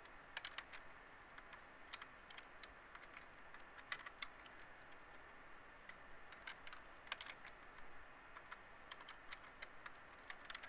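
Faint, irregular clicks of typing on a computer keyboard, in small clusters of a few keystrokes with short gaps between.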